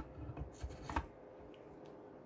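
Soft rubbing and a few light knocks as a cast-iron axlebox is rocked and shifted by hand in its hornblock, mostly in the first second, over a faint steady hum.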